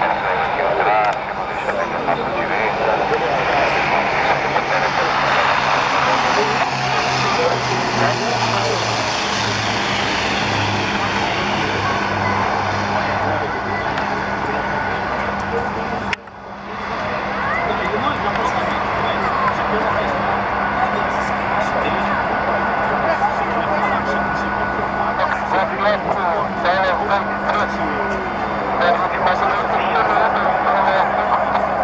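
Beechcraft King Air C90 landing, its twin turboprop engines droning, with a low tone falling in pitch as it comes past. After a sudden break, steady engine and propeller noise as it rolls along the runway, with voices over it throughout.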